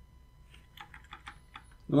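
Computer keyboard typing: a quick run of faint keystrokes from about half a second in until just before the end, typing an IP address.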